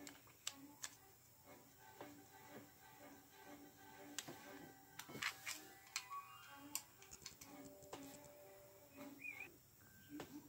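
Faint, irregular clicks and light clatter of plastic LEGO bricks being handled, picked from a pile and pressed together, over faint background music.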